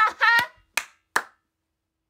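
A woman's voice briefly, then two sharp hand claps about half a second apart.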